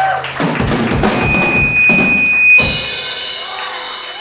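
Surf-rock band playing live with drum kit hits under the full band and a high held note, then a last loud hit about two and a half seconds in, left ringing and fading out: the song's ending.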